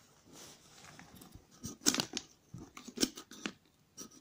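Handling noise from a stainless steel travel mug and its plastic lid: a few sharp clicks and scrapes, clustered about two and three seconds in, as the mug is opened and turned in the hand.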